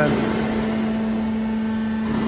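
C purlin roll forming machine running: a steady hum with one constant mid-low tone over an even mechanical drone.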